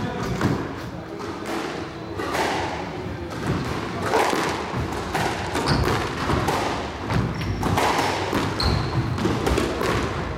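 Squash rally: a run of sharp racquet strikes and thuds as the ball hits the court walls, each with a reverberant tail, and a few brief high squeaks of shoes on the court floor in the second half.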